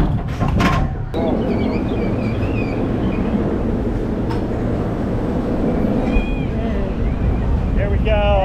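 Steady rushing and churning of water around a river rapids raft ride as the raft moves along its channel.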